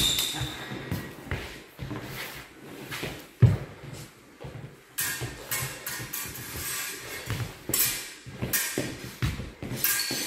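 Steel rapiers and daggers clicking and clashing in sparring, with footfalls on a hard hall floor; a sharp knock about three and a half seconds in is the loudest, and a brief high ring of steel marks the blade contact at the start.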